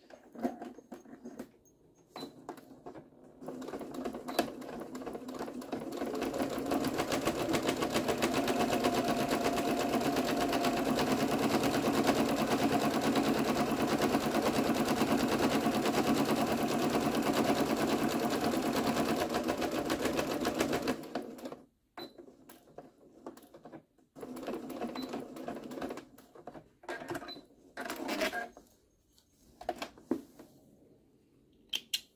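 Electric sewing machine stitching a seam through thick quilted fabric layers: it speeds up over a few seconds, runs steadily at a fast even rhythm, then stops abruptly about two-thirds of the way through. A few light clicks and handling noises come before and after.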